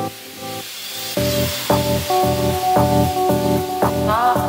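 Background music: a hiss with soft chords for about the first second, then a steady beat of about two strokes a second comes in under sustained chords.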